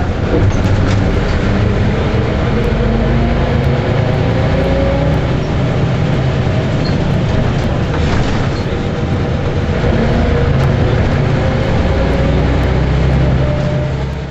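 City bus heard from inside the cabin while driving: the engine runs steadily under road and cabin noise, and its note rises twice as it picks up speed.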